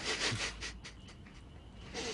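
A person chewing crunchy Lance crackers: a breathy rush and a few crisp crunches in the first second or so.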